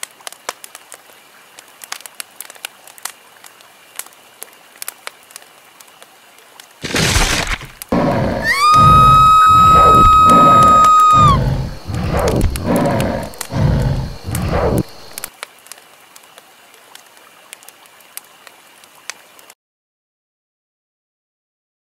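Dramatic sound effects. A faint crackle runs throughout, then a sudden burst of noise. Next comes a long, high, steady shriek held for about three seconds over a run of heavy low pulses about every half second, which go on for a few seconds after the shriek stops.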